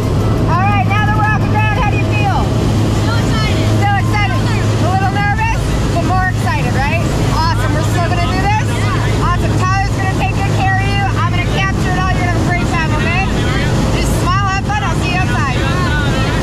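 Small propeller plane's engine droning steadily, heard inside the cabin in flight, with voices over it.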